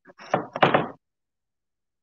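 A quick cluster of knocks and thumps on a wooden work table during the first second, as a paint sponge dabs onto a wooden cutout.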